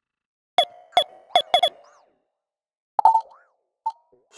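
Electronic percussion hits from a drum track processed through a granular freeze effect and ping-pong delay: four short struck sounds with a fast falling pitch in quick succession, then a pause, one more hit with a bending tail, and a small blip just before the end.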